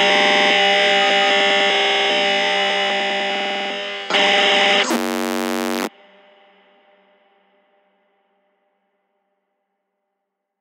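Closing bars of a darkstep dubstep track: sustained synthesizer chords, then a short louder passage and a buzzing synth hit that cuts off suddenly about six seconds in. A faint ringing tail fades out to silence.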